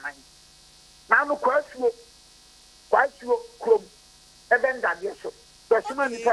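A man's voice in short phrases that sound cut off at the top, as over a telephone line, with a faint, steady electrical hum filling the pauses between them.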